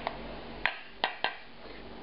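Four light clicks and taps of a pan and wooden spatula against a stainless steel bowl as browned mushrooms are scraped from the pan into it, over a faint hiss.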